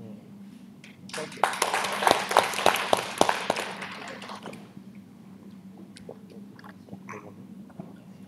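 Clip-on lapel microphone rustling and knocking as it is handled: a loud burst of scraping with sharp clicks, starting about a second in and lasting about three seconds.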